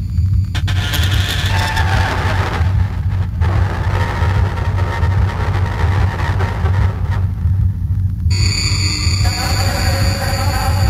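Dark industrial electronic music: a heavy, steady bass drone under layers of hissing noise that cut out briefly and return. Near the end a new layer of high steady tones comes in.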